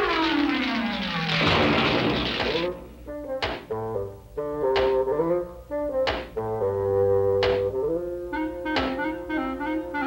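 Cartoon sound effects over brass music: a falling whistling glide ends in a crash about two seconds in, as a tree comes down. Then four sharp axe chops into a tree trunk land between held brass notes.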